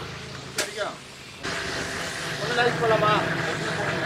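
A click, then an electric blender at a juice stall switches on about a second and a half in and runs steadily with a motor whine, churning a juice mix. Voices are heard over it.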